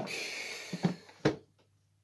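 A Tefal multicooker being handled and turned over: its plastic body scrapes and rustles across the table for under a second, then gives two knocks as it is set down.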